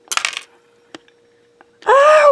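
A short jingling metallic clatter, followed by two faint clicks. Near the end a person's high-pitched cry rises and falls in pitch, louder than the clatter.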